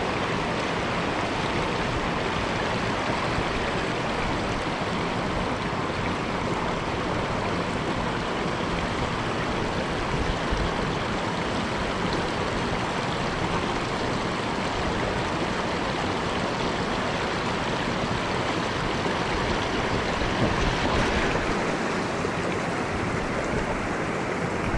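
Mountain stream running over rocks and a small cascade: a steady rush of water.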